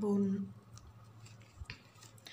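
A few faint clicks and a soft thump from hands handling satin ribbon, pressing a green ribbon leaf onto a ribbon ball with double-sided tape.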